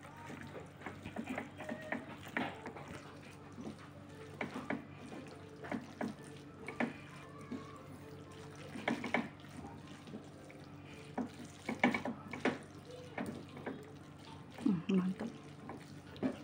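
Plastic spatula stirring and tossing spaghetti through sauce in a non-stick frying pan: soft, irregular wet scrapes and taps against the pan, over a steady low hum.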